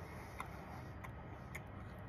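Faint, soft clicks of a jelly bean being chewed with the mouth closed, three of them about half a second apart, over a faint steady background hum.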